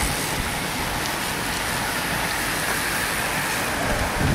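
Steady rushing noise of a pack of road racing bicycles riding close past: tyres on asphalt and the whir of the bikes, with no break in it.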